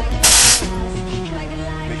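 A single short, loud hiss of a nitrous oxide purge on a custom Suzuki 1300 sport bike, starting about a quarter second in and lasting about a third of a second, with background music underneath.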